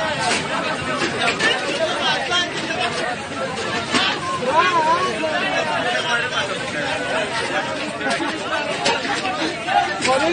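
A group of men chattering and calling out over one another, with a few sharp clicks or knocks.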